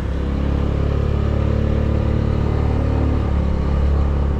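Honda scooter's small engine running at a steady speed while being ridden, an even low hum that holds one pitch, with road noise.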